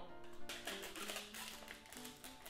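Background music of soft, held notes, led by a plucked guitar-like instrument.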